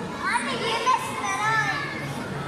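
Children's voices calling and chattering in high pitches, over a steady background hubbub.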